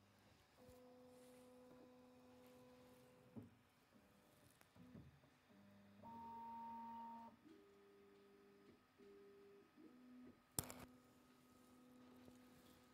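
QIDI Q1 Pro 3D printer's stepper motors whining faintly as the print head moves along its gantry. They make a string of steady tones that jump to a new pitch every second or two. A single sharp click comes about ten and a half seconds in.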